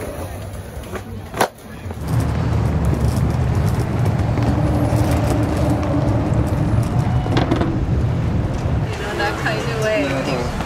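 A skateboard rolling over paving, with one sharp clack about a second and a half in. It then gives way to a steady low rumble, with voices near the end.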